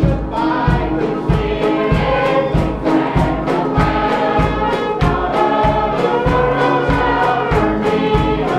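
Church choir singing a gospel song over instrumental accompaniment with a steady beat.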